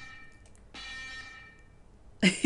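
Faint closing notes of a band's song: a chord struck about three quarters of a second in rings out and fades, following an earlier one that is already dying away.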